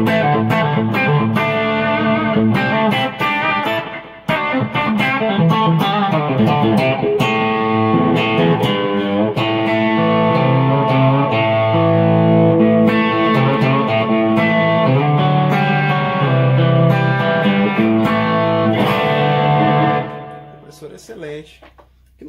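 Electric guitar played through a TC Electronic G-System multi-effects floorboard with its built-in compressor on, along with delay and reverb: picked notes and chords, stopping about 20 seconds in and dying away.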